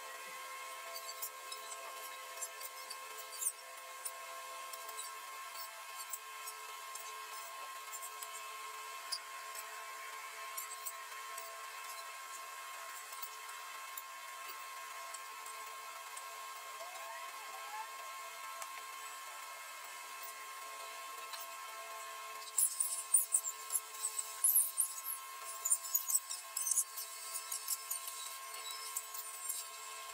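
Faint steady hum with scattered light clicks, then, for the last several seconds, a run of sharp, scratchy clicks: a plastic straw scraping and tapping against plastic molds while spreading freshly poured epoxy resin.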